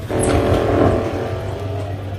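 Electronic sci-fi power-up drone from the ride's sound system. It is a steady pitched hum that swells in about a quarter second in and eases off after the middle, over a continuous low hum.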